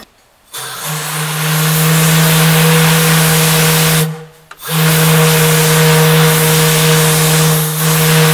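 Steam whistle on a coal-fired Admiralty portable boiler blown in two long, deep blasts with a rush of steam, each about three and a half seconds, with a short break between them.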